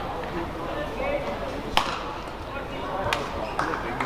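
Badminton rackets striking the shuttlecock during a rally: a sharp crack about two seconds in, the loudest sound, and another about three seconds in, over a murmur of voices.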